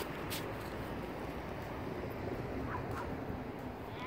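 Quiet, steady outdoor background noise with a faint click about a third of a second in.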